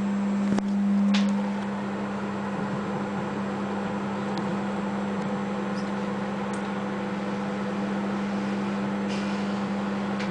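A 700-watt microwave oven running: a steady low hum over the noise of its fan, with a click about half a second in.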